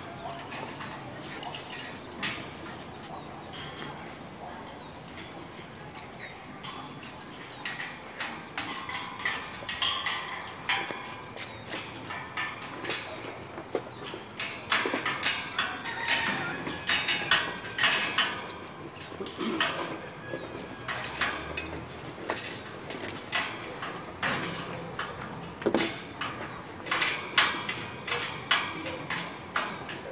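Irregular metallic clanks, clinks and knocks from lattice tower sections and tools being handled, busier and louder in the second half.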